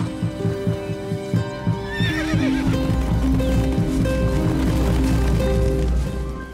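A horse whinnies about two seconds in, over the quick thudding hoofbeats of ridden horses, with dramatic background music throughout.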